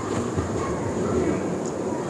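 Steady rumbling background noise through the microphone, with a faint high-pitched whine, a couple of soft knocks and faint voices.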